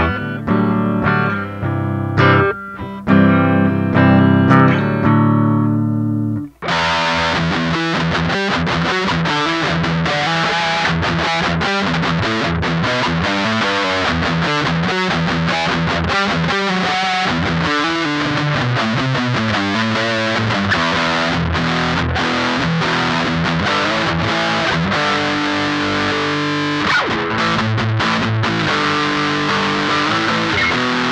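SG-style kit electric guitar played through an amplifier: ringing chords for the first six seconds or so, then a brief break and a switch to a brighter, denser sound of fast continuous playing.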